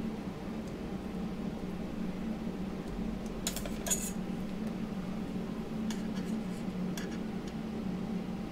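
A few light metallic clicks, clustered about three and a half to four seconds in with fainter ones later, as a long thin steel clay blade is picked up and handled on the work surface, over a steady low hum.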